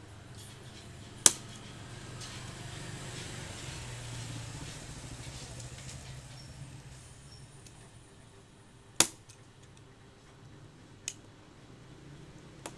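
Red-handled cutting pliers snipping off bits of a copier's ADF part to thin it, each cut a sharp snap. There is a loud snap about a second in, an even louder one near nine seconds, and a fainter one about eleven seconds in.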